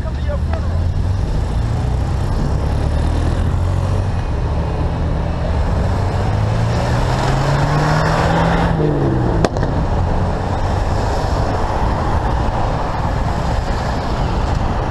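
Steady traffic and road noise heard from a moving bicycle. A pickup truck passes close alongside: its engine rises in pitch as it draws level, about eight seconds in, then drops as it goes by, followed by one sharp click.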